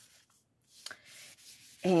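Cloth rubbing over a sheet of paper, a soft scratchy stroke about halfway through with a small click of paper near its start.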